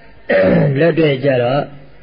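A man's voice speaking Burmese in a Buddhist sermon: one short phrase between two brief pauses.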